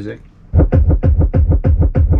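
Music played loud through a car-audio system with two Kicker 12-inch Comp C subwoofers, starting suddenly about half a second in with heavy bass and a quick, even beat.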